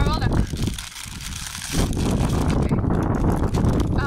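Wind buffeting the microphone in strong gusts, easing briefly about a second in, with a crisp packet rustling and crinkling as the bag is handled. A short vocal sound right at the start.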